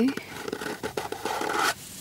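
Metal palette knife spreading white acrylic paint across a stretched canvas: a scrape lasting about a second and a half that stops near the end.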